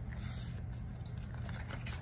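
Faint rustle of paper bills and plastic binder pockets being handled, over a steady low hum.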